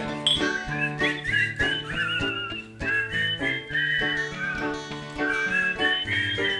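An instrumental passage of a Greek laïkó song: bouzouki, guitar and piano play plucked notes and chords. A high, wavering melody line with pitch bends runs above them.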